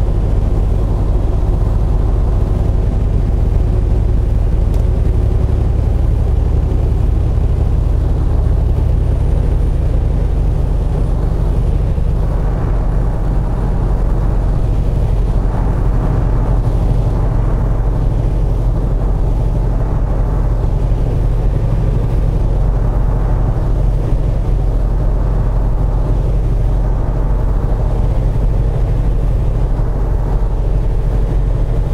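Semi truck's diesel engine running steadily at highway cruising speed: a continuous low drone mixed with road noise.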